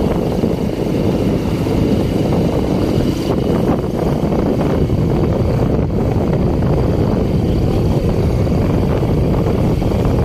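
Steady rumble of a two-wheeler riding along, its engine running under wind rushing over the microphone.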